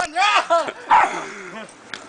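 A small dog barking several short, sharp barks in the first second, with people's voices mixed in.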